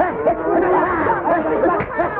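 Several people's voices calling out over one another at once, a loud clamour of overlapping cries.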